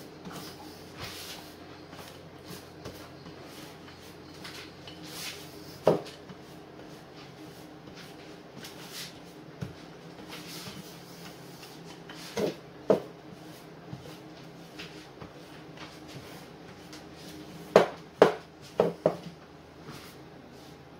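Wooden rolling pin rolling out a sheet of yeast dough on a floured worktop: quiet rolling with occasional knocks, once about six seconds in, twice around twelve to thirteen seconds, and a louder cluster of four knocks near the end as the pin is put down on the counter.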